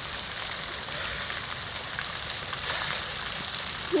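Steady patter of falling, splashing water on a pond surface.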